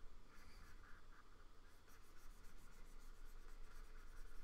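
Faint scratching and tapping of a stylus pen stroking across the surface of a Wacom Cintiq pen display, in short irregular strokes.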